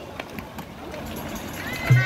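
Water splashing from swimmers in a pool, with distant shouting voices. Music comes in right at the end.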